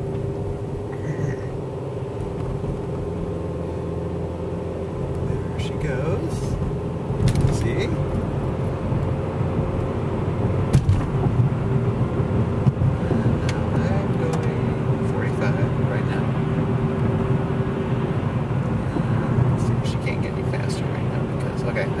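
Car engine and road noise heard from inside the cabin, a steady low rumble with a faint hum, growing louder about seven seconds in as the car gets under way.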